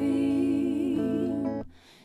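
A woman's voice in a song holds a long wavering note over steady sustained accompaniment. The music cuts off suddenly near the end, leaving a brief hush.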